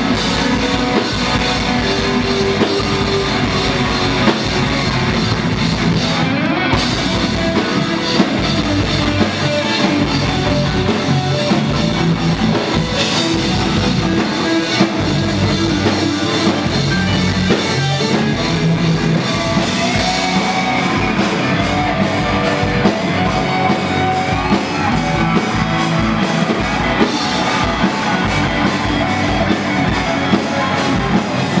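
Punk-rock band playing live: loud distorted electric guitars, bass and a drum kit, heard through a club PA.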